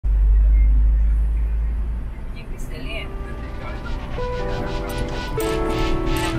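Low, steady rumble of a car driving on the road. It gives way about halfway through to background music with held, stepping notes.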